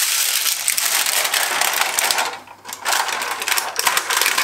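Thin titanium-sheet stove windscreen crackling and rattling as it is unrolled and handled, with a short lull about halfway through. The thin titanium sheet makes this racket whenever it is packed, unpacked or wrapped around the pot.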